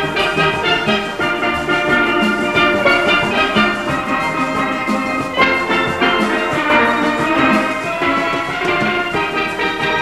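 A full steel orchestra playing: many steel pans ringing out a melody and chords together over a steady drum rhythm.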